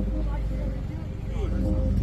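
Steady low rumble of city street traffic, with faint indistinct voices.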